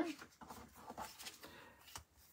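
Soft rustling and a few light taps of paper and a photo being handled and laid down on a cutting mat, ending with a slightly sharper tap.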